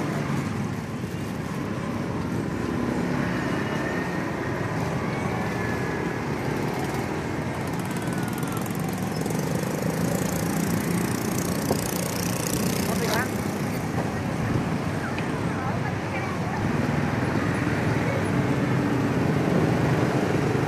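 Steady roadside street noise: passing traffic with indistinct voices nearby.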